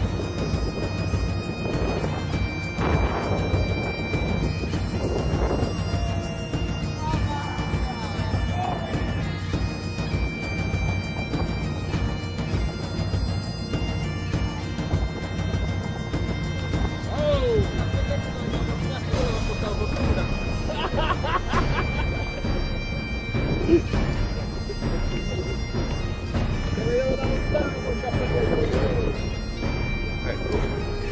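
Background bagpipe music: a steady drone under a melody of long held notes.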